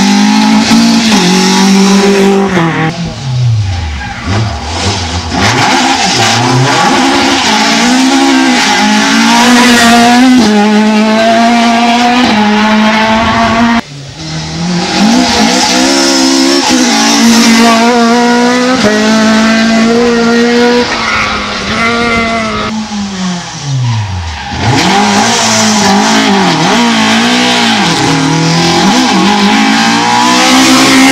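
Rally car engines revving hard through the gears, pitch climbing and dropping with each change, then falling steeply as each car passes close by, about four seconds in and again near twenty-four seconds. The sound cuts off abruptly about fourteen seconds in and a Ford Escort Mk2 rally car comes in, revving high on its approach.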